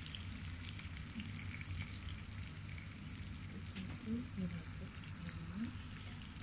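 Faint, steady sizzle of a pork, garlic-chive and egg stir-fry frying in a pan, with scattered small crackles.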